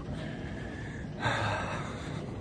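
A man's short, breathy sigh about a second in, over faint steady room noise.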